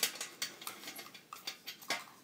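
A string of light, irregular metallic clicks and taps as the wire handle of a toy bucket is lifted and let go, knocking in its mounts; the sharpest clicks come at the start and just before the end.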